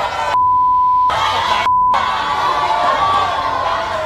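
A television censor bleep, one steady beep of about three quarters of a second and then a short second one, replacing what was said. Around it a studio crowd shouts and calls out.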